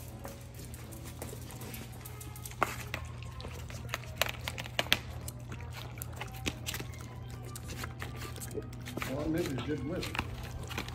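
Boston terriers eating cake off paper plates: irregular wet chewing, licking and smacking clicks, starting about two and a half seconds in, over a steady low hum.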